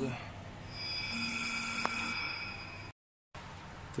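Car-repair-shop background noise: a steady low hum with a hiss lasting about a second around the middle, a single sharp click, then the sound cuts out briefly near the end.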